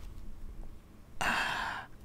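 A woman's audible sigh, a single breathy exhale lasting under a second, about halfway through.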